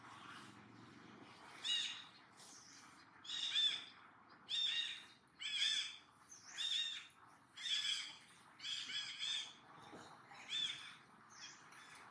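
A bird calling over and over, about eight short, high calls spaced roughly a second apart.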